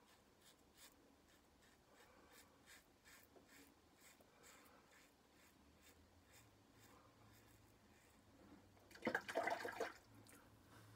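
Faint, short scraping strokes of a safety razor cutting lathered stubble across the grain, several a second. Near the end comes a louder burst of running tap water, about a second long, as the razor is rinsed.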